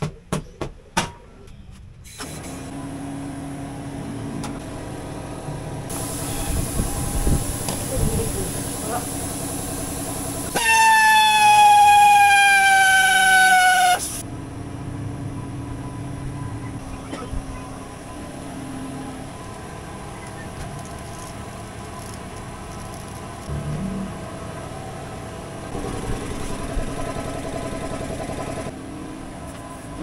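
Tire-shop work noise: a few clicks, then a steady mechanical hum with handling clatter. About ten seconds in comes a loud horn-like tone lasting about three and a half seconds, sinking slightly in pitch.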